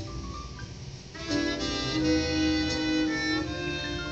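Trombone playing a solo melody over a band's accompaniment, heard through a television's speakers: a softer passage at first, then louder from just over a second in, with a long held note.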